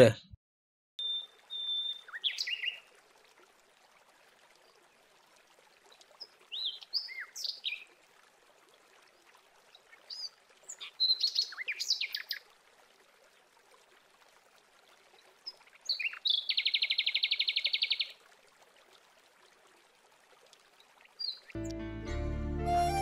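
Birds chirping in short, scattered calls over a faint steady hiss. A rapid buzzing trill lasts about a second and a half, a little past the middle.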